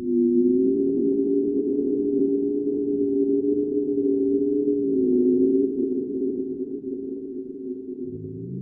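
Eerie low synthesized drone of two steady tones held together, swelling in at the start, wavering slightly about five seconds in and easing off a little toward the end.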